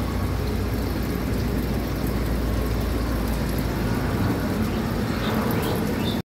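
Aquarium equipment running: a steady low hum with a constant hissing wash over it.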